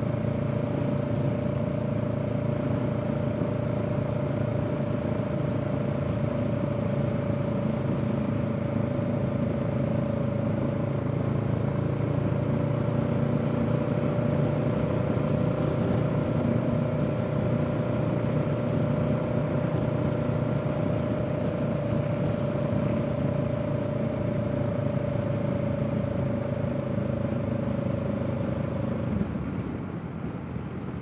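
Honda Rebel 500's parallel-twin engine running at a steady cruise in fourth gear at about 38 mph. Near the end the engine note eases off as the bike slows.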